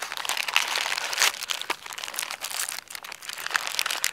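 A clear plastic zip-top bag and the plastic wrappers of the food bars inside it crinkling and crackling as hands rummage through it, with a few sharper crackles among the steady crinkling.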